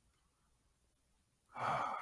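A pause, then about one and a half seconds in a person's breathy sigh that runs straight into speech.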